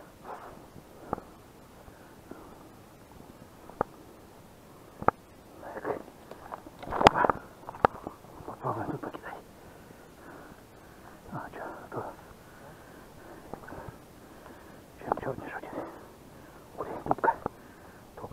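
Scattered short, muffled bursts of indistinct voice and rustle, with a few sharp single clicks or taps between them, as a man walks along a riverbank with a fishing rod and a body-worn camera.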